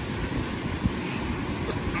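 Beach ambience: wind rumbling on the microphone over the steady wash of small waves breaking on the shore.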